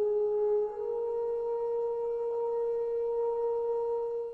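A sustained, pure-sounding musical tone that steps up a little in pitch under a second in, then holds steady and fades out near the end.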